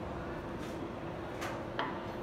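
A few light clicks of ceramic plates being set down on a stone countertop, two of them close together in the second half, over steady kitchen room noise.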